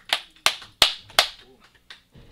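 Sparse applause from a few people: a handful of sharp, uneven claps that thin out toward the end.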